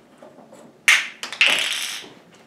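Small wooden dollhouse furniture being handled: one sharp loud tap about a second in, a few lighter knocks, then about half a second of harsh scraping noise.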